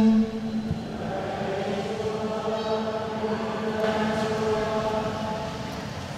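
A congregation chanting its sung response to the Gospel announcement in unison, in long held notes that fade near the end. It opens on the last moment of a single voice's chant.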